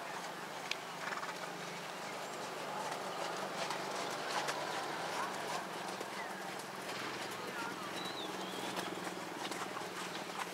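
Horse's hooves beating on the sand arena footing at a trot, over steady outdoor background noise.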